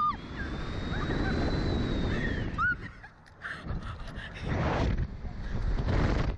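Wind rushing over the microphone as a Slingshot ride capsule is flung upward, with the rider screaming at the launch and giving a short yelp a few seconds in; the rushing comes back in gusts near the end.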